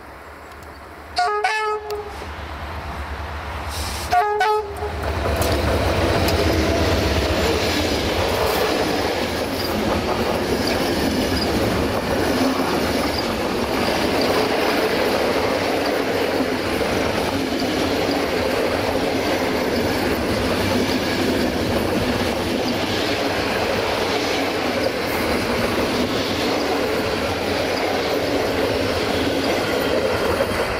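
A locomotive horn sounds two short blasts in the first few seconds. Then comes the steady running noise of a passenger train on the rails.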